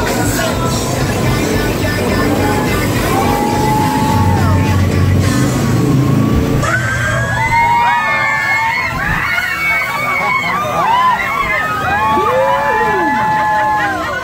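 Jet boat engine and rushing water under background music. About halfway through the sound changes abruptly to a group of passengers whooping and screaming over the music.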